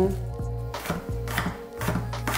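A large kitchen knife chopping a garlic clove on a wooden cutting board: a few sharp strikes of the blade on the board, over background music with steady low notes.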